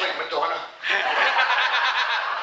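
A group of people laughing and chuckling in a large hall, dropping off briefly a little under a second in and then rising again.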